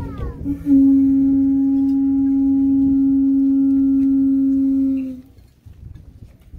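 A pū (conch shell trumpet) blown in one long, steady note lasting about four and a half seconds, cutting off about five seconds in. In Hawaiian protocol this blast signals the start of a ceremony.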